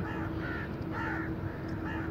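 Crows cawing, a run of short harsh caws about two a second, over a steady low hum.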